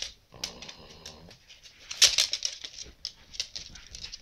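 Sleeping pug snoring and snuffling: a rough, rattling snore about a second long just after the start, then wet, clicky snuffling breaths through its flat nose.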